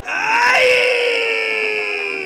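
A single long held musical note that swoops up in pitch in the first half second, then holds and slowly sinks, fading near the end.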